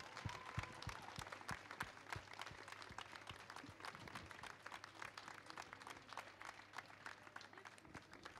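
Applause: many people clapping steadily, fairly faint, in response to a prize being announced.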